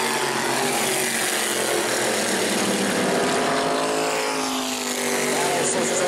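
Modified race car engines at racing speed as two cars run side by side past the camera. The engine pitch slides downward about three to five seconds in as they go by.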